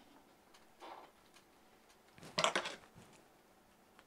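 Card stock being handled and trimmed with scissors: faint paper rustling, with a short, louder crackle of card and blades about two and a half seconds in.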